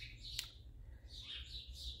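Faint bird chirps in the background, with one sharp click about half a second in.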